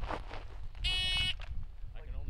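Electronic shot timer's start beep: one steady beep about half a second long, about a second in, signalling the shooter to begin the drill after the "stand by" call.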